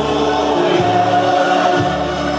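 Portuguese folk song for dancing, with a group of voices singing together over an accompaniment whose bass changes note about once a second.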